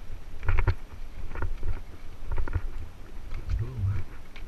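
Mountain bike rattling down a dry dirt trail, with sharp knocks as the wheels drop over wooden steps across the trail: a cluster of knocks about half a second in, another near a second and a half, and more around two and a half seconds. Under them runs a steady low rumble of wind and trail vibration on the camera.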